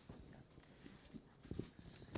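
Near silence: hall room tone with a few faint, low knocks, the clearest about one and a half seconds in.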